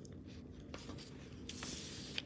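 Faint small handling noises close to the microphone: a couple of soft clicks about three quarters of a second and a second in, then a short rustle near the end, over a steady low room hum.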